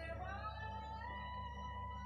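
Background music with one long held note that slides up near the start and then holds.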